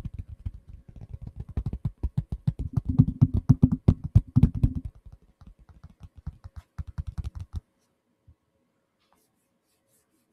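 Fingers tapping rapidly on a handheld phone held right up against the microphone, many taps a second, each with a deep thud. The tapping is loudest in the middle and stops about three-quarters of the way through, followed by one last tap.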